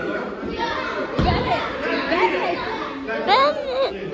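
Many young children's voices and chatter echoing in a large hall, with a thump about a second in and a high-pitched child's shout near the end.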